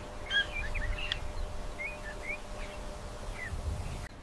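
Small birds chirping in short, scattered calls over a steady low rumble of outdoor ambience.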